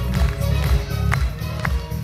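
Instrumental intro of a song played as a backing track, with a heavy pulsing bass beat and two short clicks near the middle.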